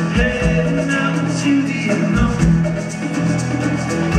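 Folk-rock band playing live: strummed acoustic guitar, bass guitar and drums, with a low bass pulse about every two seconds.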